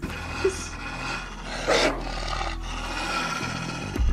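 A wolf's growling sound effect from a drama soundtrack over a low rumble, with a louder snarl about two seconds in.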